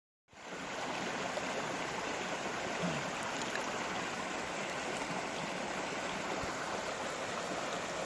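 Small creek's water running and trickling over rocks, a steady babble.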